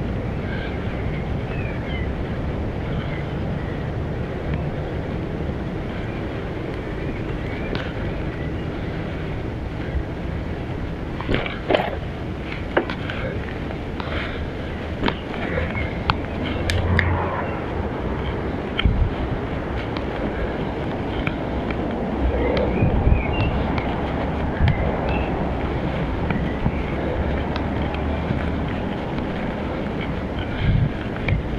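Steady wind rush and tyre rumble from a bicycle rolling along a paved path, picked up by a handlebar-mounted action camera, with a few short sharp knocks and rattles from the bike about a third to halfway through.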